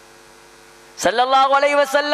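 Steady electrical mains hum through the sound system during a pause. About a second in, a man's voice comes back loudly with a long, drawn-out vocal sound.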